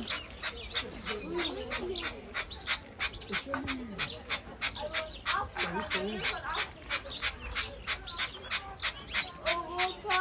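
Many birds chirping rapidly and continuously, with a few lower calls mixed in.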